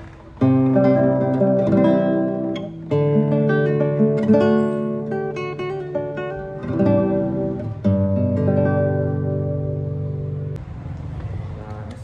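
1979 Takamine No.5-4 classical guitar played with the fingers: chords struck near the start, about three seconds in and about eight seconds in, each left ringing while single notes change over it, the last fading out near the end.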